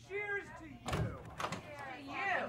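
A door being flung open with a bang about a second in, with voices around it.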